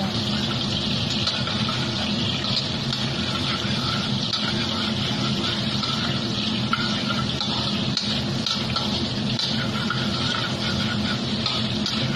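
Pork and garlic sizzling in hot oil in a stainless steel wok, stirred with a wooden spatula: a steady, even hiss over a low hum.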